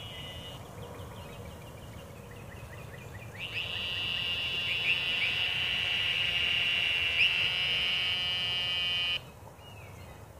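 A buzzing insect in the trees. After a few quieter seconds of faint chirps, a loud, steady high-pitched buzz swells in about a third of the way through, holds, then cuts off suddenly near the end.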